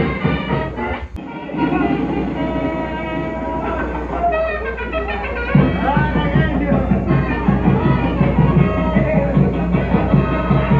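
Mexican banda brass band music. It breaks off for a moment about a second in, then resumes, and about halfway through a steady, even bass beat comes in.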